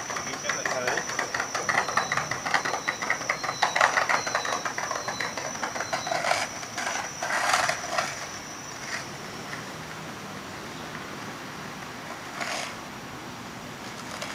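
Night city-sidewalk ambience: people's voices close by during the first six seconds, over a steady high insect trill with short repeated chirps that stops about eight seconds in. After that only an even low street and traffic hum remains.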